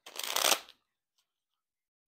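Tarot cards being shuffled in one quick flurry of crackling card-against-card slaps lasting under a second, with a faint tick shortly after.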